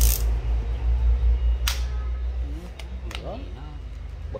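A low engine rumble that fades away about two and a half seconds in, with a few sharp clicks as a cordless drill's plastic switch and collar are worked by hand.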